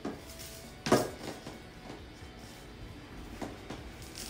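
A square glass vase filled with stones being set down on a hard, glossy tabletop: a sharp knock at the start, a louder one about a second in, then two fainter touches.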